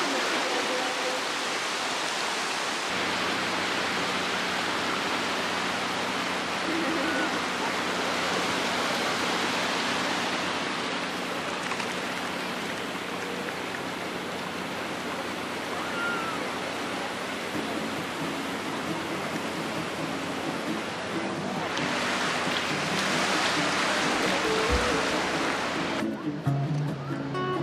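Small waves washing onto a sandy shore in a steady rush of surf, swelling louder near the end. Quiet background music with steady low notes comes in under it a few seconds in.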